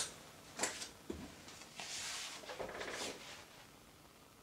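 Faint handling of a paper card and cardboard folders: a light tap about half a second in, then a soft rustle around two seconds in.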